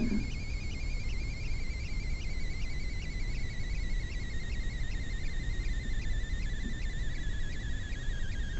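A steady high-pitched electronic whine that drifts slowly down in pitch, with a faint quick pulsing in it, over low hum and hiss.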